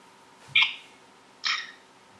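Two brief, breathy chuckles from a man, about a second apart, against quiet room tone.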